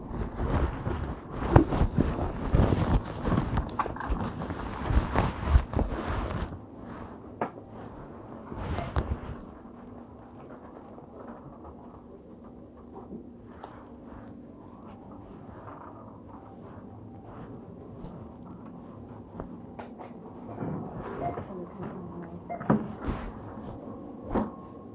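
Loud rustling and rubbing mixed with sharp knocks for about the first six seconds, then a much quieter stretch with only scattered faint clicks and taps, and a few louder knocks near the end.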